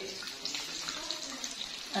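Hot oil sizzling steadily with fine crackles around chicken-and-potato cutlets shallow-frying in a pan as they are turned over with a spatula.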